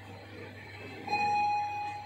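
LG lift's arrival chime sounding as the car reaches its floor: a single electronic ding about a second in, held for nearly a second, over the car's steady low hum.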